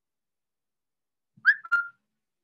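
A brief whistle-like note near the end: a quick rising tone, then a click and a short held tone.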